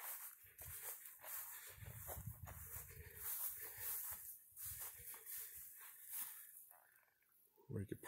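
Faint footsteps on dry grass and gravel with the rustle and knocks of a handheld camera being carried, as irregular soft thuds and clicks.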